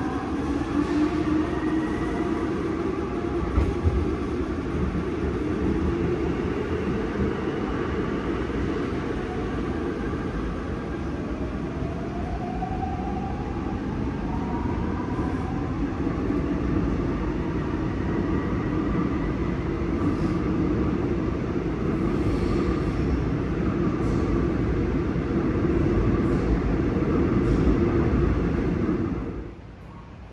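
A Seoul Subway Line 5 electric train heard from inside the car as it runs through the tunnel: a steady roar and rumble of wheels on rails. The motors give a whine that rises in pitch about two seconds in and again around the middle. The sound drops away abruptly just before the end.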